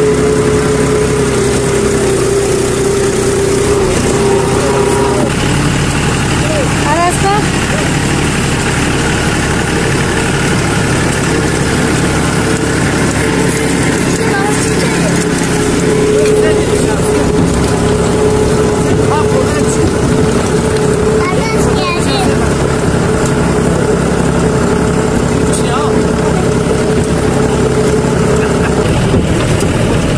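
Tractor engine running steadily while pulling a trailer, its note shifting slightly about five seconds in.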